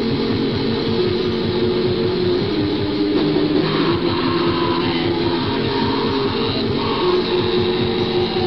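Raw black metal rehearsal recording from a 1994 cassette demo: a distorted electric guitar riff over rapid drumming. The recording is lo-fi, with a dull, cut-off top end.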